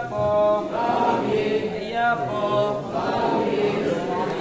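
Group of Ayyappa devotees chanting together in repeated sung phrases, several voices at once.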